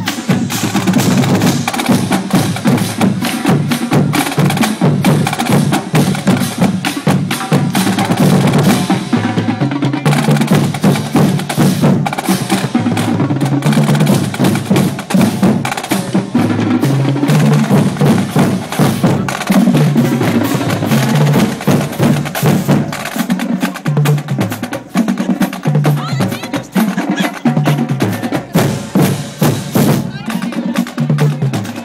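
Marching band drumline playing a cadence: tuned Pearl marching bass drums trading low notes that step up and down in pitch, under a steady stream of sharp stick and rim clicks.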